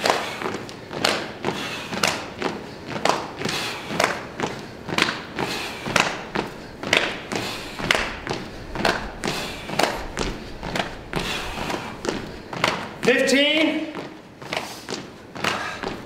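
Sneakers landing on a hardwood gym floor in a steady rhythm as several people do jumping jacks, the thuds slightly out of step with one another.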